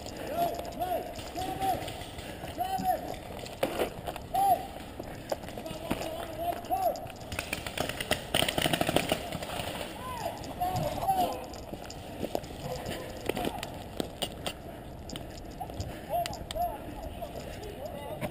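Distant shouted calls of voices, too far off to make out words, repeating throughout. They are mixed with scattered sharp clicks and a quick rattling run of clicks about eight seconds in.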